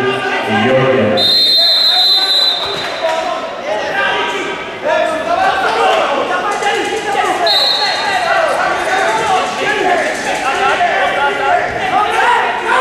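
Referee's whistle blown twice in an echoing sports hall, a long blast about a second in stopping the wrestling and a shorter one midway restarting it. Voices from around the hall run underneath.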